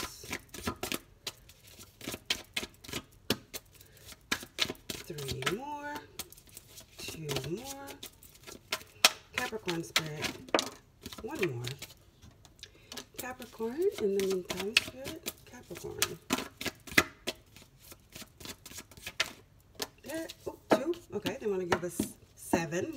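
A deck of tarot cards being shuffled in the hands and dealt onto a cloth-covered table: a long run of quick, crisp clicks and snaps of card stock, with brief pauses.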